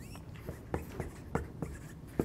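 A pen writing on an interactive whiteboard: a run of light, irregular taps and short scrapes as the strokes go on.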